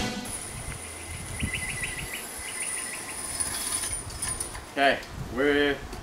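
Outdoor backyard ambience: a thin, steady high-pitched insect buzz for most of the first four seconds, and two short runs of rapid, evenly spaced chirps between about one and a half and three seconds in.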